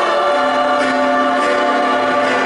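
Mixed gospel choir singing in harmony, holding long sustained chord notes.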